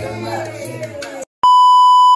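Music with a singing voice plays, then cuts off suddenly a little over a second in. After a brief gap, a loud, steady, slightly buzzy test-tone beep of the TV colour-bars kind begins.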